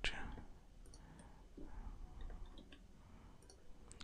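Faint, scattered clicks of a computer mouse and keyboard over low room noise, as a 3D model is edited with loop cut and bevel operations.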